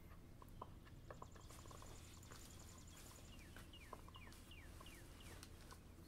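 Near-silent room tone with a low steady hum and faint, scattered taps of a stylus on an iPad screen. Midway there is a rapid run of faint high ticks, followed by a series of short, falling high chirps.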